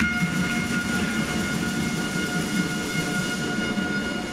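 A loud, steady horn blast in a sports hall, one unchanging tone that starts abruptly and holds for about four seconds before fading, over a low rumble of hall noise.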